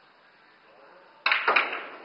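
Pool cue striking the cue ball about a second and a quarter in, followed a quarter second later by two sharp clicks of billiard balls colliding as an object ball is knocked into the corner pocket.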